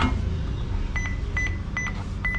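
Card payment terminal keypad beeping as keys are pressed: a click right at the start, then three short high beeps about a second in, roughly 0.4 s apart. A steady low rumble runs underneath.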